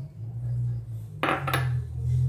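An egg cracked against the rim of a bowl: two sharp taps about a third of a second apart, over a steady low hum.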